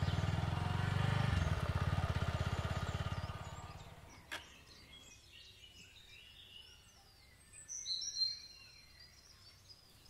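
Motorcycle engine idling with an even beat, then dying away as it is switched off about four seconds in. A single sharp click follows, then birds chirp, most clearly near the end.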